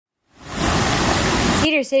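Rushing water of a shallow stream churning over a riffle, a steady hiss that fades in at the start and cuts off suddenly near the end.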